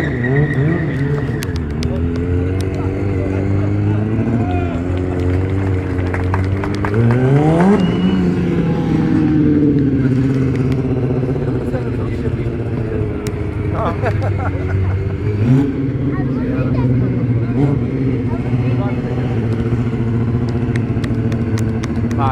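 Sport motorcycle engine revving hard during stunt riding. Its pitch dips and climbs, with a sharp rise about seven seconds in, then it is held at high revs.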